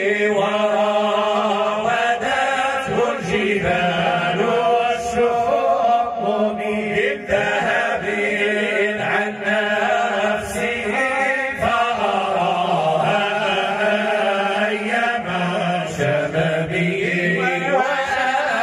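Male voices chanting devotional praise poetry for the Prophet Muhammad (Moroccan Sufi madih), unaccompanied, in long, drawn-out melodic lines.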